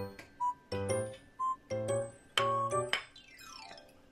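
Light, cheerful background music of short stepped notes in a bouncy rhythm, ending in a falling run of notes near the end.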